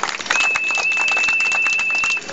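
Microphone feedback through a public-address speaker: a steady high-pitched whistle that starts about a third of a second in and holds one pitch, over background noise.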